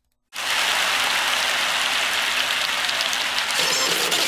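A steady rushing noise cuts in suddenly after a brief moment of dead silence and runs on evenly, with no tone or rhythm in it.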